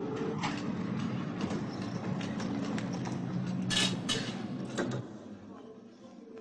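Electric milk float driving along a street, a steady hum, with two sharp clinks about four seconds in; the sound drops away about five seconds in.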